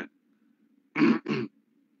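A person clearing their throat: two short voiced bursts about a second in.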